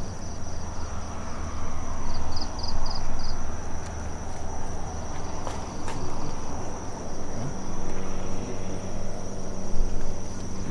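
Night insects: a steady high-pitched trill throughout, with a short run of about five quick chirps around two seconds in. Beneath it runs a louder low rumble, with a couple of sharp clicks past the middle.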